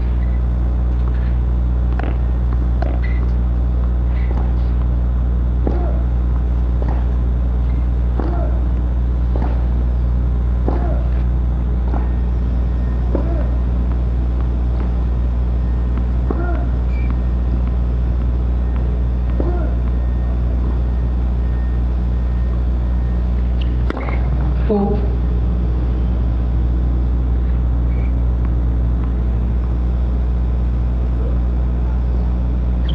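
A steady low hum with several fixed low pitches, with faint short sounds over it and two sharp knocks close together late on.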